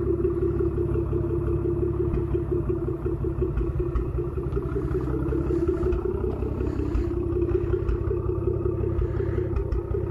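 A car engine idling: a steady, even low rumble that does not change.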